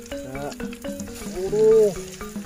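Batter-coated leaf frying in hot oil in a metal wok over a wood fire, with a steady sizzle and frequent small pops. Background music plays under it, and a brief rising-and-falling voice, the loudest sound, comes near the end.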